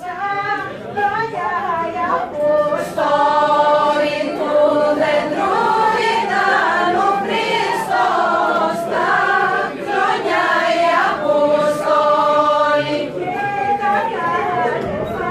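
A mixed choir of men and women singing a Thracian Christmas carol (kalanta) together, in long held phrases.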